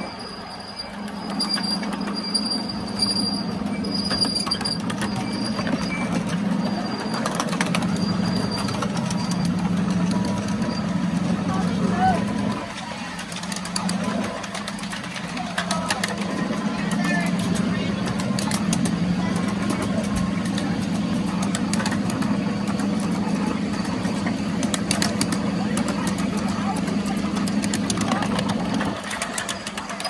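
A 7.5-inch gauge live-steam miniature train running along its track, heard from a riding car: a steady low rumble with scattered clicks from the wheels on the rails.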